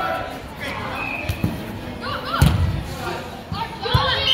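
A few thuds of a soccer ball being played on indoor turf, the loudest about halfway through, among shouts from players and spectators.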